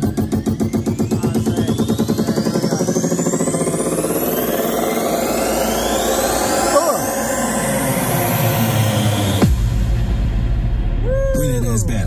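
Electronic music played very loud through large Augspurger studio monitors: a fast pulsing build-up with rising sweeps that drops, about nine and a half seconds in, into heavy deep bass.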